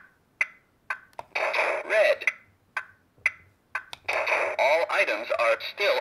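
The eBay electronic board game's talking unit: short electronic beeps and clicks between phrases of its computer voice making game announcements.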